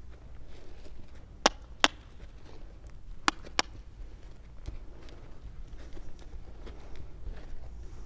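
Sharp, short clicks in two quick pairs, the pairs about a second and a half apart: a horse handler clicking her tongue to cue a mare to move, over faint low arena rumble.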